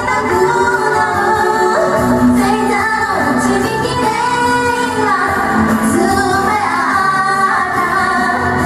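Two women singing together into handheld microphones over a backing track.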